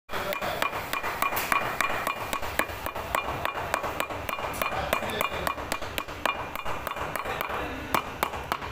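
Shoemaker's hammer tapping rapidly along the edge of a lasted ladies' shoe, pounding the upper down over the insole, about three or four strikes a second, each with a short metallic ring.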